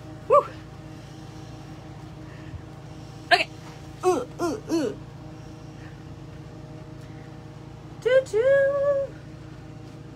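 A woman's voice: a short "woo!" just after the start, a few brief vocal sounds around the middle, and a held sung note near the end, over a steady low hum.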